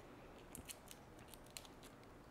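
Faint, light clicks and ticks of fingers handling a small plastic handheld gimbal camera, a quick irregular run of them starting about half a second in.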